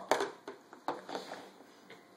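Faint clicks and light knocks of a plastic divided plate being handled on a plastic high-chair tray, with a short scuffling rustle near the start.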